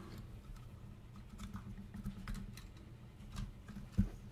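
Faint scattered clicks and taps of a plastic Transformers Bludgeon action figure being handled, its parts moved and flipped by hand, over a low steady hum; a slightly sharper click comes at the very end.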